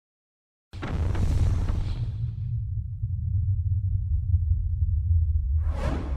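A sudden burst of whooshing noise that fades over about two seconds into a steady low rumble, with a second swell of noise near the end before it cuts off abruptly.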